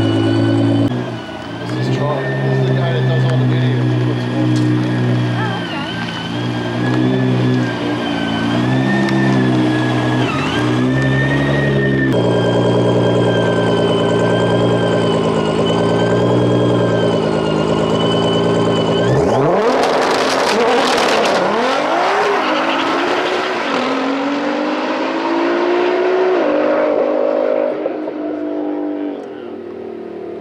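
Twin-turbo V6 of a 1500 hp Switzer-built Nissan GT-R idling at the start line. About 19 s in it launches hard and accelerates away, rising in pitch through several gear changes, then fades as it goes down the track.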